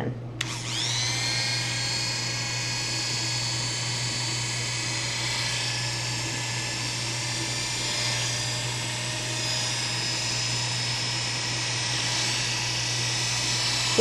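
Oster Classic 76 electric hair clippers starting about half a second in, then running with a steady buzz while cutting short hair up the side of a man's head.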